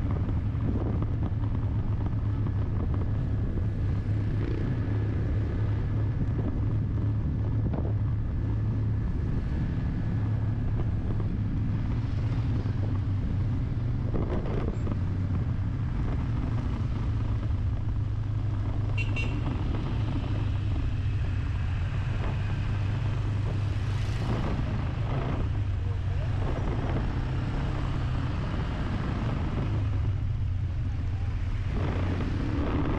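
A car driving steadily through town traffic: a constant low engine and road drone, with a brief high-pitched sound partway through.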